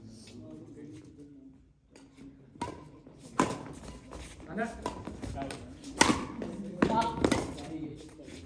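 Badminton racquets striking a shuttlecock in a rally: several sharp, crisp hits in the second half, about a second apart, with players' voices in between.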